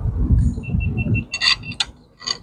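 A GoPro camera sounding a quick run of short, high beeps of one pitch, about six a second, followed by two sharp clicks, under a steady low rumble. The beeps are the camera's warning as it overheats and shuts down.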